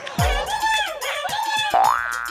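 Comedy sound effects edited over music: a deep boom that drops in pitch just after the start, then a tone that slides steeply upward near the end.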